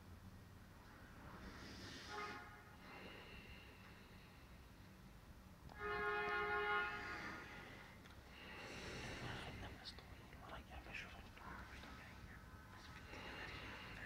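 A man's soft, breathy voice, whispering or breathing audibly. About six seconds in comes a louder, steady held tone lasting about a second.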